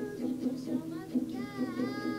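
A boy singing with his own strummed acoustic guitar. Near the end he holds a sung note that dips in pitch and then steadies over the chords.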